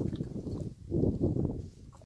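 White rhino breathing out heavily, two low, breathy blows: one at the start and one about a second in.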